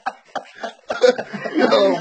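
A man's voice: a few short breathy sounds, then laughter from about a second in.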